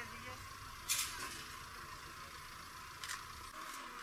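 Hissy outdoor ambience with a low rumble that drops away about three and a half seconds in, and two sharp clicks, the louder about a second in and another about three seconds in.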